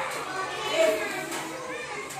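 Children's voices talking and calling out in a classroom, with several voices overlapping.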